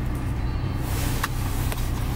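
The 2011 Audi R8's V10 engine idling, a steady low hum heard from inside the cabin, with a couple of faint clicks.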